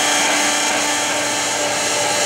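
Cross rail of a 48-inch Webster Bennett vertical turret lathe rising under power from its elevating motor: a steady mechanical whir, with a faint hum that changes pitch about a second in.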